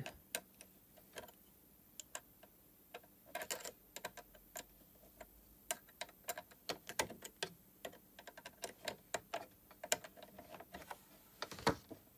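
Faint, irregular metal clicks and ticks from a flat-head screwdriver turning the presser-bar screw of a sewing machine as it tightens a walking foot in place, with a louder knock shortly before the end.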